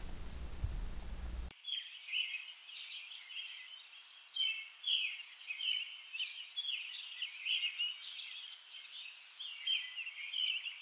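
Wild birds singing and chirping in repeated short calls. It follows a low steady room hum that cuts off abruptly about a second and a half in.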